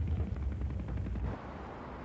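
Battle sound effects under the narration: a low rumble with faint scattered gunfire, dropping a little in level about one and a half seconds in.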